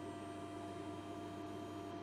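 Faint steady electrical hum made of a few constant tones over low background hiss.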